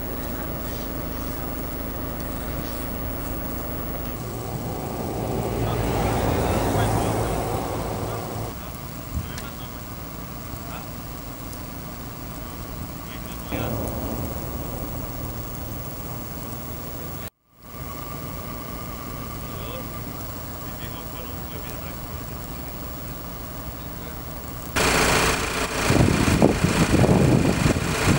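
Roadside traffic noise on a snow-covered road: a steady rumble of running vehicle engines, with one vehicle swelling past about five to eight seconds in. A loud rushing noise takes over in the last few seconds.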